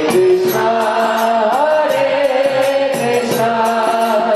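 Devotional kirtan singing: a sung melody with long held, gliding notes, over a steady beat of small hand cymbals.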